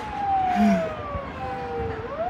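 Emergency vehicle siren wailing, its pitch falling slowly and starting to rise again at the end. A short hum from a voice about half a second in.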